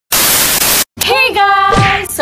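A burst of loud TV static hiss, a glitch transition sound effect, lasting just under a second and cutting off suddenly.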